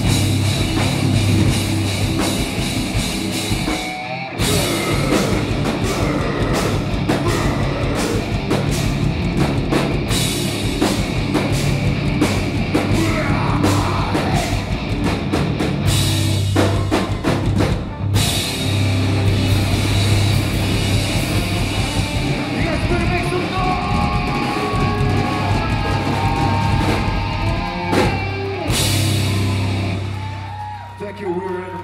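Live heavy rock band playing loud: distorted electric guitars, bass guitar and a drum kit with crashing cymbals. The band cuts out for an instant about four seconds in and again near eighteen seconds.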